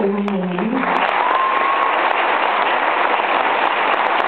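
Audience applauding: a steady, dense wash of clapping, with a voice trailing off in the first second.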